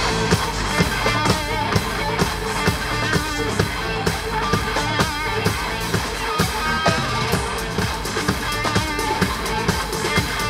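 Live EDM-rock band playing: electric guitar over a drum kit keeping a steady beat, with electronic keyboards in the mix.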